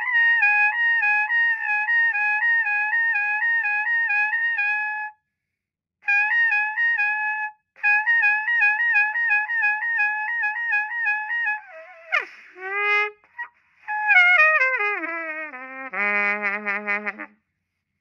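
Trumpet playing rapid lip slurs around a high written B-flat, in phrases broken by short breaths. About twelve seconds in, the tone cracks and falls away, with the lips audible: the sign that the embouchure is giving out at the top of the range. A descending run of notes and a held low note follow.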